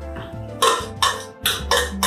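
Background music with steady tones, over which a metal spoon scrapes and clinks several times against a steel bowl and pan while spreading tomato paste.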